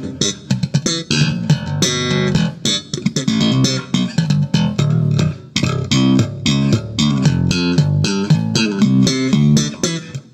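Electric bass guitar played through a Gallien-Krueger 410 NEO bass cabinet driven by a GK 1001RB head, the amp EQ set flat with presence, contour and boost off: a busy run of plucked notes with a short break about five and a half seconds in. The cabinet is brand new and being broken in.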